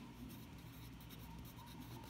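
Wooden pencil writing on a paper worksheet: faint, scratchy strokes of the graphite across the paper.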